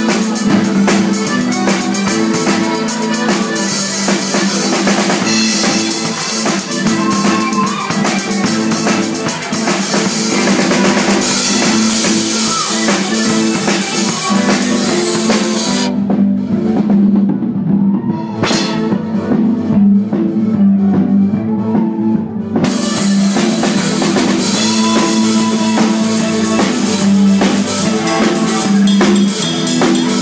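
A Scottish ceilidh band plays dance music with a drum kit driving a steady beat. For about six seconds past the middle the high cymbal sound drops away, then the full kit comes back.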